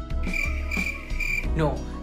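Cricket chirping sound effect: a steady high trill lasting about a second, over quiet background music.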